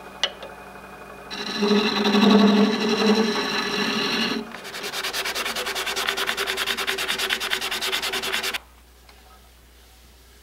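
Turning tool cutting into the end of a black walnut pepper grinder blank spinning on a wood lathe, then sandpaper held against the spinning wood with a fast, even scratching. The scratching cuts off suddenly near the end, leaving only the lathe's faint steady hum.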